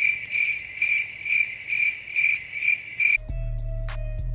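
Cricket chirping, dropped in as an editing sound effect for an awkward silence: an even high chirp pulsing about twice a second that starts and cuts off abruptly after about three seconds, when background music comes back in.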